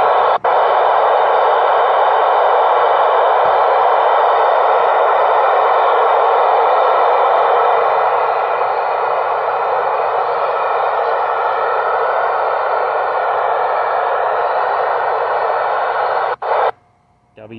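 Icom ID-4100A transceiver's receive audio from the TEVEL-3 satellite downlink: a loud, steady radio hiss with a faint buzz of tones in it. It drops a little about halfway, as the radio switches to D-Star digital mode, and cuts off with a click near the end.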